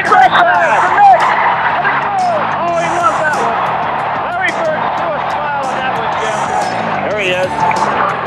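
Basketball game audio: crowd noise in an arena, with many short squeaks of sneakers on the hardwood court.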